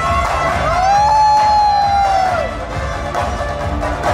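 Dance music with a steady beat; a long held note slides up about half a second in, holds, and falls away a little past the middle.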